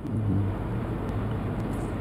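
Steady background hiss with a low hum and no clear single event: the pause between sentences, filled by the room's noise.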